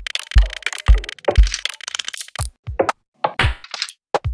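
Experimental electronic music: a heavy kick drum thumps about twice a second, then about halfway through the beat drops out into short sharp glitchy clicks. A brief cut to silence follows, then a burst of noisy hiss near the end.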